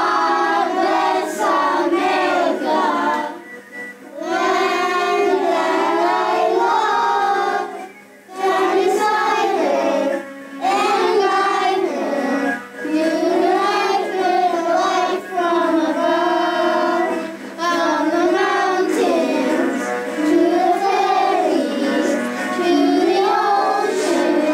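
A group of young children singing a song together, in phrases with short breaks between them.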